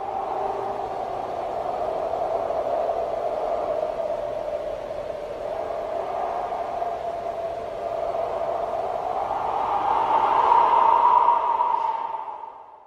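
A breathy, wind-like whooshing sound effect with no clear melody, swelling and rising slightly in pitch near the end.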